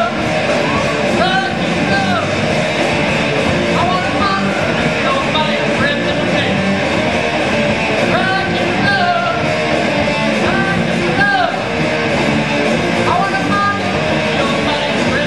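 A live punk rock band playing: electric guitars and a drum kit with a singer's voice over them, all at a steady loud level.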